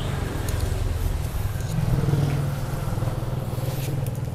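A steady low rumble, swelling slightly about two seconds in, with a few faint clicks over it.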